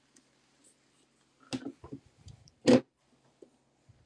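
Quiet room with a faint low hum and a few short clicks about halfway through, one of them louder than the rest.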